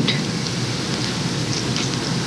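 Steady hiss from an old, worn videotape recording, with no other clear sound.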